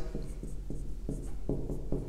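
Marker pen writing on a whiteboard: a quick run of short strokes, about five a second.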